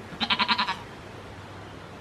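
A goat kid bleating once: a short, quavering bleat of about half a second.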